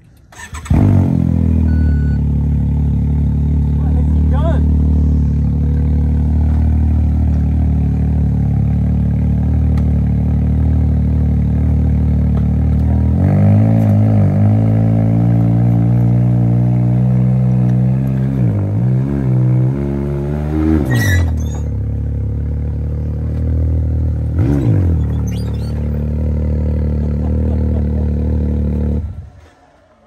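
Can-Am UTV race car's engine running at a steady idle, coming in suddenly about a second in. Its note steps up about halfway through, dips briefly a few times, and cuts off shortly before the end.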